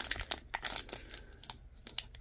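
Foil trading-card pack wrapper crinkling in the hands: scattered small crackles and clicks.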